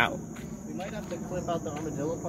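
A chorus of night insects, crickets by the sound, keeps up a steady high-pitched trill.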